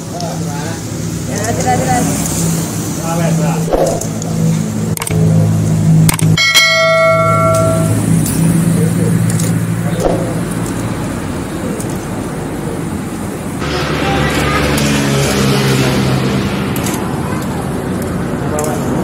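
Potato fries frying in oil in a stainless-steel deep fryer as tongs stir them, with a hiss that swells near the end. A single clear bell-like ding rings out about six and a half seconds in. A low steady hum runs underneath.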